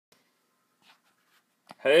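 Near silence with a few faint clicks, then a man's voice starts just before the end.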